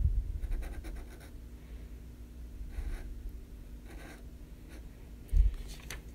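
Felt-tip Sharpie marker scratching on paper in short strokes while a stem and leaf are drawn. There is a low thump at the start and a louder one about five seconds in.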